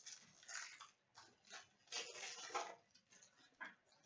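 Faint crinkling and rustling of a trading-card pack's foil wrapper and the cards being handled, in short scattered bursts.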